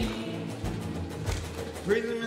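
Live worship band music between sung lines: held instrumental notes over a steady low beat about every 0.6 s, with a singer coming back in near the end.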